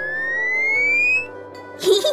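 A cartoon whistle sound effect: one clear tone climbing steadily in pitch, ending about a second in, over light background music. A short burst of another sound comes near the end.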